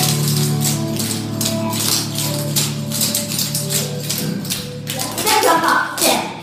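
Clogging taps on shoes striking a wooden parquet floor in a quick, even rhythm as a group dances buck steps, over a country song playing.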